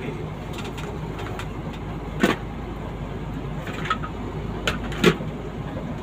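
Steady engine and road rumble inside a moving vehicle's cabin, with two sharp knocks, about two seconds and five seconds in.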